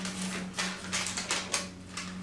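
Thin backing sheet crinkling and crackling as it is peeled off a hardened candy melt mermaid tail, in a quick irregular series of crackles. A low steady hum runs underneath.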